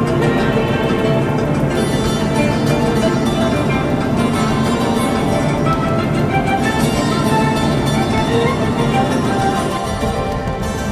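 Background music with many held notes at a steady level.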